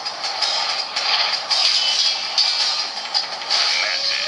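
Soundtrack of an animated action film playing through a tablet's small built-in speaker: busy sound effects with music, tinny with almost no bass.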